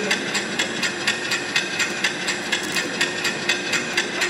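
Even, rhythmic ticking, about four sharp ticks a second, over a low steady hum.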